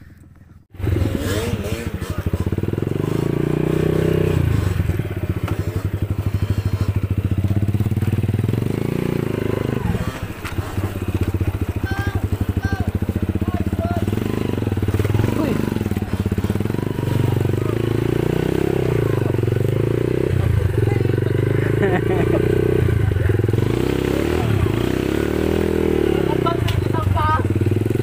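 Dirt bike engine running while ridden along a muddy trail, coming in suddenly about a second in and rising and falling in pitch with the throttle.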